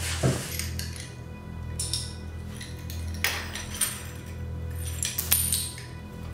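Broken crockery clinking as the shards are gathered up: a few sharp, separate clinks spread over several seconds, over steady background music.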